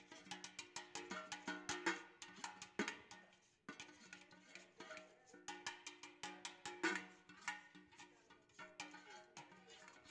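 Spoon stirring batter in a metal mixing bowl, knocking against the bowl's side several times a second so that it rings faintly, with a brief pause a few seconds in.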